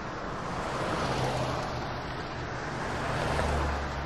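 Steady rumbling noise that swells and fades, with a low hum that grows stronger near the end.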